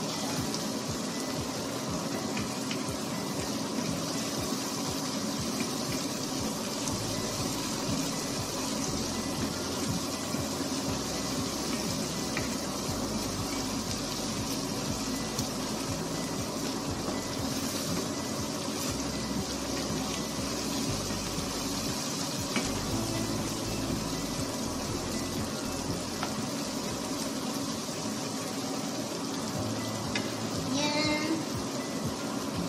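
Sliced onions and cherry tomatoes sizzling steadily in a frying pan as they are stirred with a wooden spatula.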